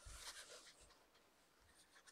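Near silence, with faint rustling of a paperback coloring book's paper pages being handled in the first second, dying away.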